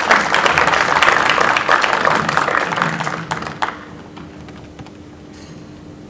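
Audience applauding in a hall, dense clapping that thins out and stops about three and a half seconds in, leaving a steady low hum.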